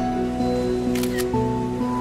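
Soft background music with held notes, and a camera shutter sound, a quick double click, about a second in.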